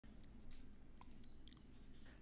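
Faint computer mouse clicks, a few of them from about a second in, over quiet room tone.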